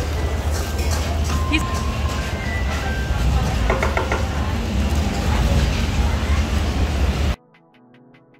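Busy street-market noise: a steady low rumble with background chatter and faint music. A metal spoon clinks a few times against the clay mortar or plastic box about four seconds in as salad is scooped out. Near the end the sound cuts off suddenly to quiet electronic music with a ticking beat.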